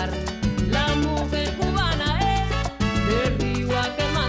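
Salsa music played by a band, with a steady bass line and percussion under the melody.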